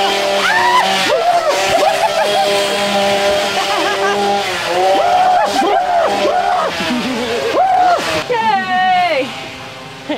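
A chainsaw engine running and revving, with people screaming and shouting over it. A falling pitch comes about eight seconds in, and then the sound drops away.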